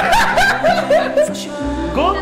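Hearty laughter, a quick run of 'ha's about four a second, over background music; the laughter stops about one and a half seconds in while the music carries on.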